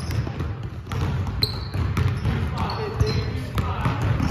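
Basketballs bouncing on a hardwood gym floor, several irregular thuds from more than one ball, with players' voices in the background.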